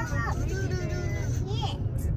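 Steady low road and engine rumble inside the cabin of a moving car, with voices chattering over it.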